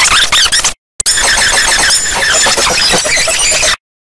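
Loud, harshly distorted and noisy effects-processed audio, with a garbled sound filling all pitches. It breaks off in two brief silent gaps, just before a second in and near the end.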